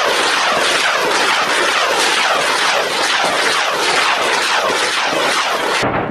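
Truck-mounted multiple rocket launcher firing a salvo: a continuous loud rushing of rocket motors with many quick falling whooshes overlapping one another, cutting off abruptly near the end.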